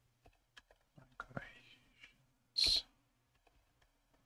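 Computer keyboard typing: a scattering of individual keystrokes. A short breathy hiss about two and a half seconds in is the loudest sound, with softer breathy mouth sounds just before it.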